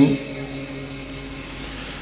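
A man's amplified Quranic recitation breaks off at the start with a short fading echo, leaving a steady low background hum.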